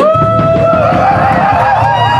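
Metal band playing live at high volume: distorted guitars and bass under a long held high note that wavers in its middle.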